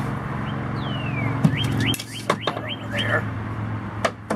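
A small bird calling: one falling whistle about a second in, then a run of about six quick hooked chirps, roughly four a second. A sharp knock about a second and a half in, then a few lighter knocks, over a low steady hum that fades halfway through.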